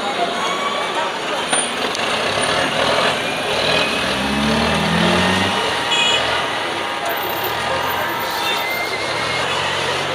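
Congested street traffic at close range: motor scooters and cars running and edging past, with people's voices in the mix. A nearby engine revs between about four and five seconds in, and short high beeps sound around six seconds.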